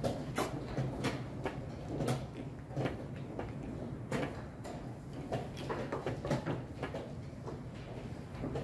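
Wooden chess pieces knocked down onto a wooden board and a chess clock pressed in quick blitz play: a string of sharp, irregular clacks, about a dozen, over a low room hum.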